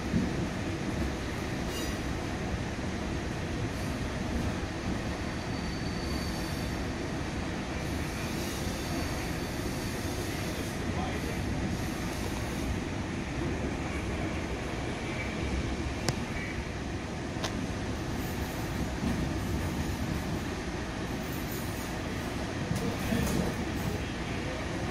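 Steady running noise of a commuter train heard from inside a passenger coach: wheels rolling on the rails, with a couple of sharp clicks past the middle.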